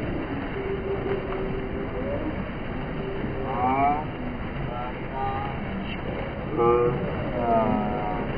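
Steady rush of water running down a pool water slide and pouring into the pool. High voices call out several times in the second half.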